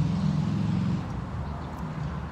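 Street traffic: a motor vehicle's engine runs as a low, steady hum that weakens about a second in, over general road noise.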